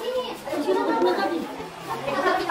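Many children's voices chattering at once, overlapping and indistinct, in a classroom.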